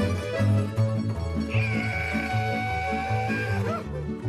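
Tamburica folk band playing an instrumental passage: strummed tamburas and accordion over a double bass keeping an even two-beat bass line. One long high note is held through the middle and bends off near the end.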